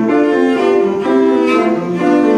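Cello played with the bow in a moving line of notes, the pitch changing every fraction of a second, with piano accompaniment.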